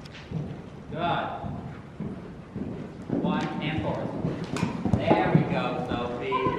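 Hoofbeats of a ridden horse on the dirt footing of an indoor arena, with indistinct voices talking several times over them.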